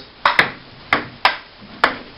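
Table tennis rally: the celluloid ball clicks sharply off the paddles and the table, five ticks in all, roughly half a second apart.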